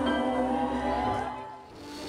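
Live band music with a melodic line over a steady bass, fading out about a second and a half in.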